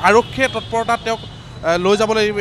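People talking close by in short bursts, with street traffic in the background.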